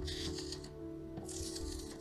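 Background music with held notes. Over it, a sticky lint roller crackles twice, briefly, as it is rolled across paper picking up gold-leaf flakes.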